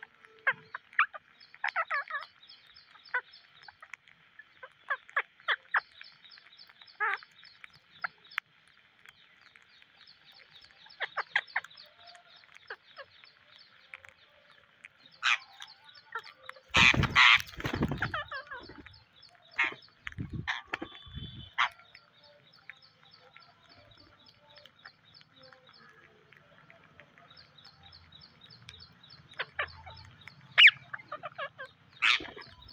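Rose-ringed parakeets feeding as a flock, giving short sharp squawks and chirps now and then, over a fast high ticking trill that comes and goes. About halfway through there is a loud rustling knock as a bird brushes against the microphone.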